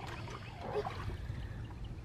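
Soft water lapping and trickling in a backyard pool as a baby's inflatable float is moved through the water, over a low steady background rumble.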